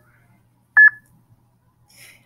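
TouchCast Studio app's recording countdown beep: one short, high, single-pitched beep about a second in, part of a once-a-second countdown just before recording starts.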